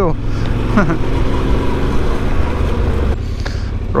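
Yamaha Ténéré 700's parallel-twin engine running at a steady low throttle on a slow off-road track, with wind rushing over the bike-mounted microphone. About three seconds in, the engine note drops and quietens.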